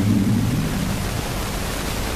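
A man's reciting voice trails off in the first moment, leaving a steady, fairly loud hiss of background noise.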